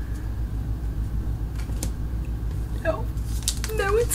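Trading cards being handled, giving a few faint clicks and rustles over a steady low hum, with a brief quiet vocal sound near the end.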